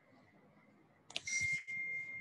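A click and a brief hiss, then a faint, steady, high-pitched electronic beep tone that begins about a second in and holds.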